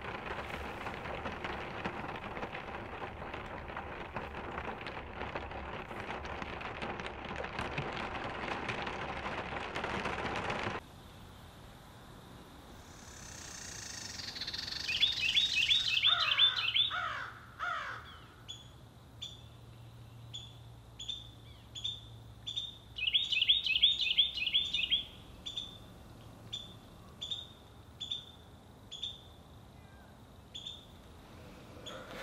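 Steady rain falling on and around the cabin, which cuts off abruptly about ten seconds in. After that, woodland birds call in the morning quiet: fast trilling bursts, a few falling calls, and a short chirp repeating a little more than once a second.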